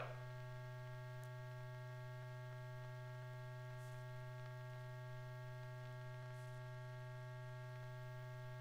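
Steady electrical mains hum with a few faint steady higher tones above it, unchanging throughout and with no other sound.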